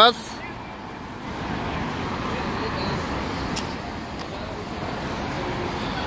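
Steady road traffic from cars on a busy city street, with a single sharp click about three and a half seconds in.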